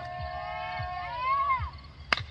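A high-pitched human voice holding one long drawn-out shout. It rises in pitch about a second and a half in, then breaks off just before the end.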